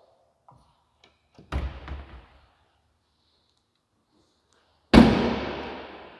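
The rear swing-out tailgate of a 2016 Jeep Wrangler Unlimited slammed shut near the end: one sudden solid thud that dies away over about a second, shutting nice and solidly. A much softer thud comes about a second and a half in.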